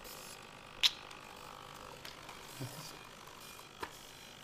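Faint mechanical whirring and ticking from a small humanoid robot's servo motors as it moves its head and eyes. One sharp click comes about a second in, with two softer ticks later.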